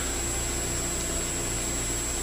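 Steady background hiss with a low hum, unchanging through the pause between spoken phrases.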